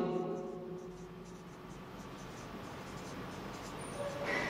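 Whiteboard marker writing on a whiteboard: faint strokes of the marker tip as a word is written out.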